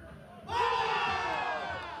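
Several voices shouting together, breaking out suddenly about half a second in and falling in pitch as they fade over about a second: beach soccer players yelling at a shot on goal.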